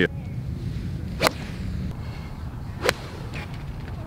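A golf club striking a ball on a tee shot, heard as a sharp crack. There is another short crack about a second and a half before it, over a faint low rumble.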